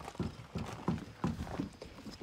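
Footsteps on gravel: a walking run of short, light crunches, about three or four a second.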